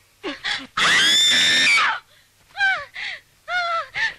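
A person's voice: a long, high-pitched scream of about a second, followed by several short cries that fall in pitch.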